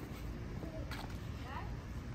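Faint, brief voices over a steady low outdoor rumble, with one faint click about halfway through.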